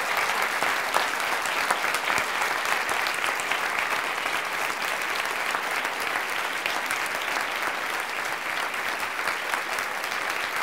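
Audience applauding steadily after a lecture ends, a long run of dense clapping that eases off slightly toward the end.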